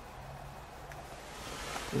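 Quiet background ambience: faint hiss with a steady low hum, and no distinct event.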